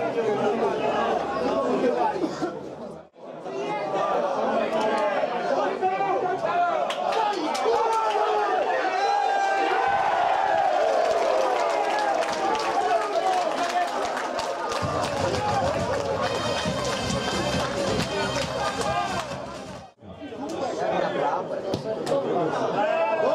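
Voices of players and spectators at a football match, several people calling out and talking over one another. The sound breaks off sharply twice, about three seconds in and near the end.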